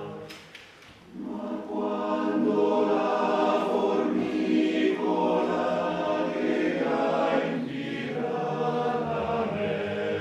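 Male-voice choir singing unaccompanied in harmony. A brief pause between phrases comes near the start, then the voices come back in fuller and louder.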